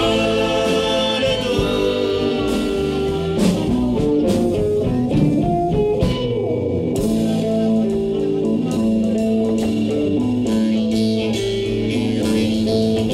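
A live band playing a song: voices singing over acoustic guitar, violin and drums, with a run of sharp drum strikes partway through.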